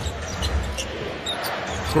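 Basketball being dribbled on the hardwood court, a few faint knocks over the steady noise of the arena crowd.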